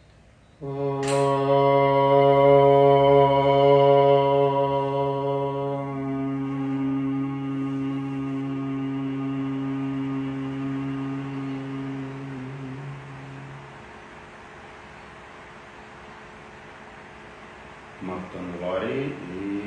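A man chanting one long Om on a steady low note. The open vowel closes into a hum about six seconds in, which fades out at about fourteen seconds, leaving faint room hiss.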